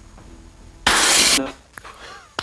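Pressurised fire-detection tube bursting in the heat of a fire inside a television set, releasing a sudden loud rush of extinguishing gas that lasts about half a second and then dies away. The burst is the tube failing at the hottest spot and discharging gas onto the fire to put it out.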